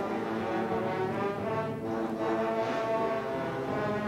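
High school concert band playing slow, sustained chords, the held notes shifting to new chords every second or so.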